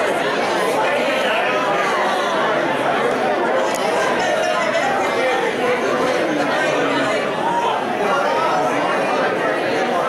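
Chatter of many people talking at once: a church congregation standing and mingling, many overlapping conversations and no single voice leading.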